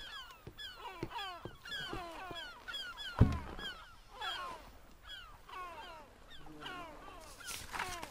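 Seagull cries: a steady run of short, falling calls, several overlapping. A single loud thump about three seconds in, as someone sits down on a wooden crate.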